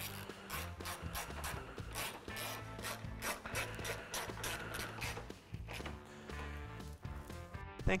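Hand ratchet with a 5.5 mm socket and extension clicking in quick runs with short pauses as it drives the screws of a plastic headlight cover, over quiet background music.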